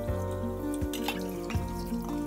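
Background music with held, changing notes over a kitchen faucet running into a sink while a stainless steel bowl is rinsed by hand, with splashing and dripping water.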